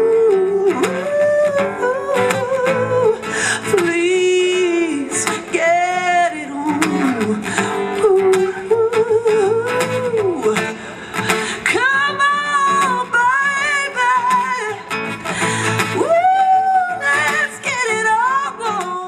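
A singer with acoustic guitar, holding long notes that slide up and down and waver, over steady strummed chords.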